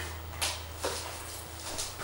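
A few soft footsteps on a wooden floor as a person gets up from a wooden rocking chair and walks, over a steady low hum from a guitar amplifier.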